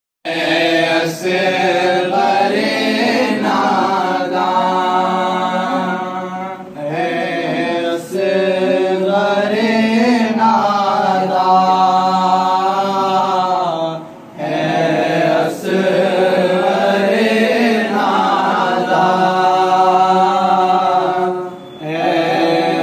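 Young men's voices reciting a noha, a Shia Muharram lament, as unaccompanied chant. Long drawn-out melodic lines are broken by short pauses about every seven seconds.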